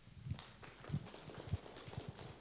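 Faint, irregular knocks and thumps, three of them deeper and about half a second apart, with lighter clicks between.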